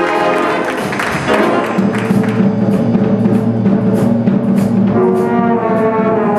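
High school jazz big band playing: saxophones, trumpets and trombones in full sustained chords over drums with steady cymbal strokes. Low horns hold long notes through the middle, and the brighter upper brass comes back in near the end.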